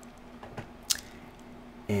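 Quiet room tone with a faint steady hum, broken by one sharp click about a second in and a softer click just before it.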